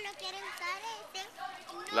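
Children's voices talking and calling out in play, high-pitched, with a louder voice breaking in at the end.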